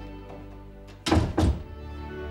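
A door being shut: two loud thunks about a third of a second apart, over soft background music.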